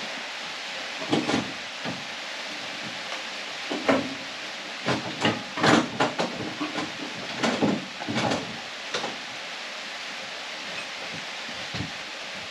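Irregular metal knocks and clunks as the front strut assembly of a 1981 Mazda RX-7 is worked into place over the lower ball joint, over a steady background hiss.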